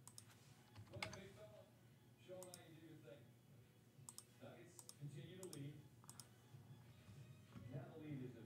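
Faint, scattered clicks of a computer mouse and keyboard, several in quick pairs, over near-silent room tone.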